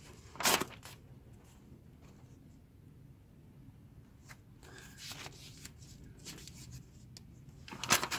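A glossy magazine page being turned: one quick paper swish about half a second in, then faint rustles and taps of paper and fingers on the page.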